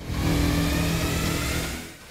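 JCB backhoe loader's diesel engine running steadily, fading out near the end.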